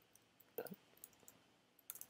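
A few faint keystrokes on a computer keyboard over quiet room tone, a clearer one about half a second in and another near the end.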